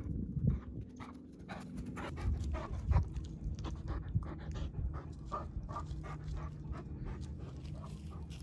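A dog panting rapidly, about three quick breaths a second, with a steady low hum and a few dull thumps underneath.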